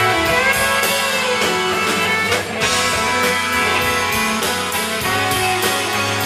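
A live rock band playing an instrumental passage with an almost marching-band sound: trumpet and saxophone over electric guitar, bass, keyboards and drums. It is heard from among the audience.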